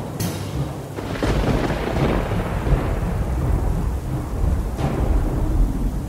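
Thunder rumbling: a long, low roll that swells in about a second in, over a steady hiss of rain.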